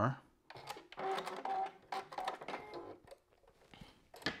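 A Juki sewing machine runs in a short burst, a steady motor hum under rapid needle clicking, and stops about three seconds in. A few light clicks follow near the end.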